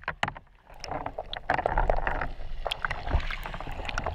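Water sloshing and splashing against a clear container at the surface, with many small sharp drip and splash clicks. It falls almost silent about half a second in, then washes back in louder.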